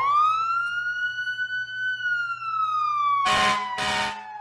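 Emergency vehicle siren wailing in one slow cycle: it climbs steeply at the start, holds high, then slowly falls. Two short bursts of hiss cut across it near the end.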